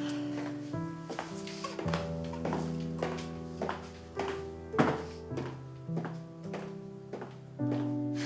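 Soft background score music with sustained chords that change every second or two. Over it come footsteps on a hard floor, sharp knocks at a walking pace, from two people walking off, one of them in high heels.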